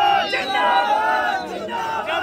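A crowd of men shouting and cheering together, many voices overlapping, some held as long drawn-out shouts.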